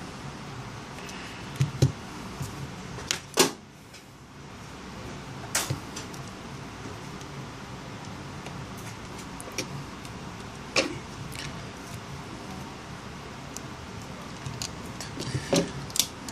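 Scattered light clicks and taps of a Samsung Galaxy S Advance's small plastic and metal parts being handled and fitted as the phone is reassembled, over a steady low hum.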